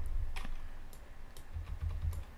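About four light clicks from a computer keyboard and mouse while the editing software is operated, over low thuds that are loudest at the start and near the end.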